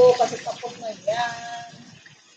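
A woman's voice making two drawn-out vocal sounds, one at the start and one about a second in, each gliding in pitch and without clear words, fading quieter toward the end.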